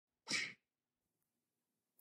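A single short, sharp burst of breath noise from a person, lasting about a quarter of a second, soon after the start.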